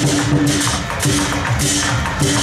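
Lion dance percussion ensemble playing loud and steady: drum, gong and cymbals, with the cymbals crashing again and again over a ringing low tone.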